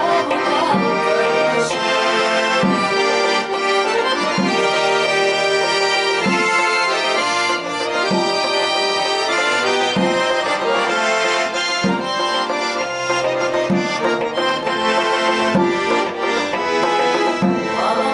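Piano accordion playing an instrumental passage of an Ossetian song, a sustained reedy melody over bass notes that fall about once a second.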